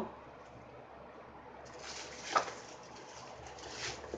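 Rustling and crinkling of a wig's packaging being handled, starting a little before halfway, with one short louder sound a little past the middle.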